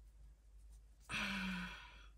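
A woman's single voiced sigh, starting about a second in and lasting under a second, steady in pitch and breathy. It is a sigh of frustration with how her makeup looks.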